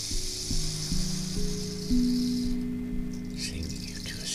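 Sound-healing instruments struck one after another: five low, pure ringing tones about half a second apart, each sustaining and layering into a held chord. A steady high hiss underneath cuts off about two and a half seconds in.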